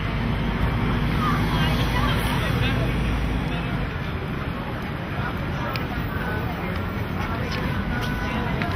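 Busy city street: crowd chatter and passing traffic, with a low rumble in the first few seconds.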